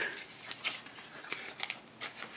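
Light crinkling and scattered clicks of a plastic trading-card pack wrapper being handled and starting to be peeled open, with a couple of sharper crackles about halfway and past one and a half seconds in.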